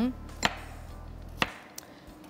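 Kitchen knife slicing raw sweet potatoes on a cutting board: two sharp knocks of the blade reaching the board about a second apart, with a fainter knock near the end.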